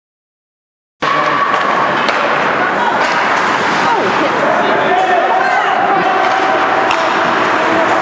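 Live ice-hockey rink audio: spectators' voices shouting over the noise of play, with an occasional sharp knock. It starts abruptly about a second in.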